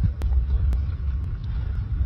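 Steady low rumble of wind buffeting the microphone, with faint clicks about twice a second.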